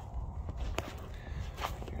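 Footsteps on dry dirt and mulch: a few short crunching steps over a low rumble.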